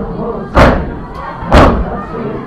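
Mourners beating their chests in unison (matam), one heavy slap about once a second, two of them here, with voices running beneath.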